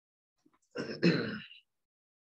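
A person clearing their throat once, a short, rough two-part burst about a second in.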